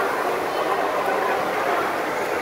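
Battery-powered plastic toy trains running on plastic track, a steady whir of their small motors and gearboxes with wheels rattling over the track joints.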